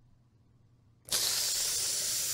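A person letting out a long, steady hiss of breath through the teeth, a wincing 'tsss' reaction, starting about a second in after a moment of near silence.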